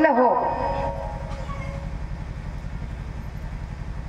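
A woman's voice trails off on a falling word at the start, then a steady low rumbling hum with a fast, even flutter carries on through the pause.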